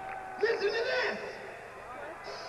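A loud, wavering shout from a voice, starting about half a second in and falling away after about a second, over a lower wash of hall noise.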